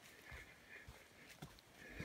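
Faint footsteps of a hiker walking on a dirt trail, about two steps a second, in near silence.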